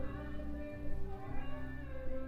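A woman singing with musical accompaniment, her voice holding long notes and sliding between pitches.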